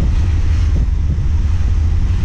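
Wind buffeting the microphone in a moving open-top 1965 Alfa Romeo Giulia Spider Veloce, over the car's engine and road noise as a steady low rumble.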